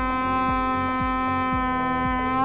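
A bugle holding one long, steady note over background music with a steady drum beat, a little over two beats a second.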